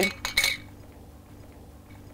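An empty glass jar clinking as it is handled: a few quick, bright clinks in the first half second.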